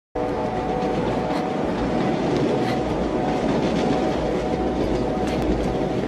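A train running on rails: a steady, loud rumble with held metallic tones and scattered clicks of wheel clatter.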